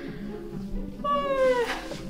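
A woman's voiced yawn: one drawn-out vocal note, about a second in, sliding down in pitch. Light background music plays under it.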